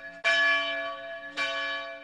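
A bell struck twice, about a second apart, each stroke ringing on in several steady tones and fading; the first stroke is the louder.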